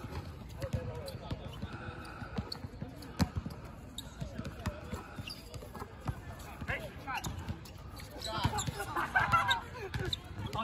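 A basketball bouncing on an outdoor hard court, irregular single thuds rather than a steady dribble, among players' voices that grow louder and livelier near the end.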